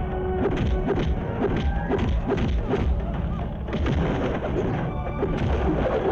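Action-film fight soundtrack: driving background score overlaid with repeated punch and impact sound effects, about two or three hits a second.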